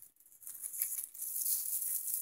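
Faint rustling and rattling of plastic bags of dry pet food kibble, starting about half a second in.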